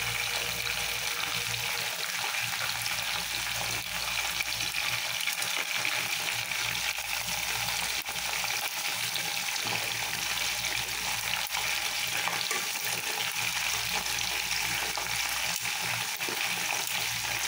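Chicken pieces deep-frying in hot oil in a pot: a steady sizzling hiss with scattered small crackles. Metal tongs turn the pieces in the oil.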